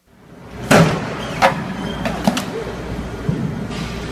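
A man falling off a running treadmill in a gym: a loud thump under a second in, then several sharp knocks, over the steady noise and low hum of the gym.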